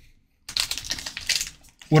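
Foil Pokémon booster pack wrapper crinkling and crackling as it is handled and flexed, a quick run of crackles lasting about a second, before it is torn open.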